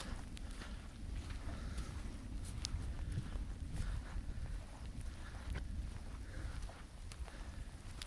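Footsteps on wet, sandy ground, with a steady low rumble underneath and a few faint scattered clicks.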